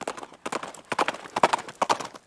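Horse hoofbeats at a run, a quick repeating rhythm of strikes that grows louder.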